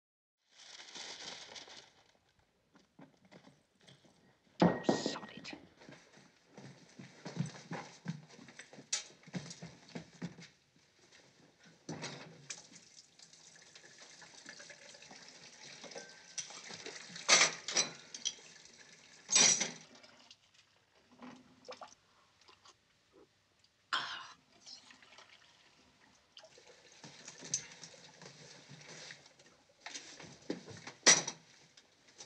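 Household clatter of crockery and objects being handled and dropped, with several sharp knocks, followed by a tap running water into a china cup.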